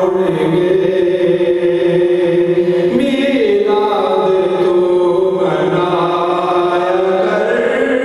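A man's voice chanting an unaccompanied Islamic devotional recitation into a microphone, holding long melodic notes that slide slowly from one pitch to the next.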